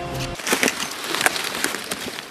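Dry leaf litter and twigs crackling and snapping irregularly underfoot and against a jacket as someone scrambles over forest debris and a fallen log, with fabric brushing close to the microphone. A guitar music bed cuts off about a third of a second in.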